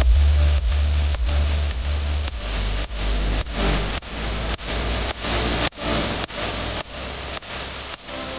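Jet engine noise from a taxiing F-35A Lightning II: a steady rushing hiss over a deep rumble, gradually getting quieter.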